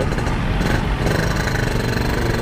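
Yamaha RX-King's two-stroke single-cylinder engine running steadily at low speed in slow traffic.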